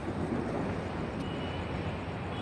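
Steady outdoor background noise, a low rumble with hiss, picked up by a handheld phone's microphone.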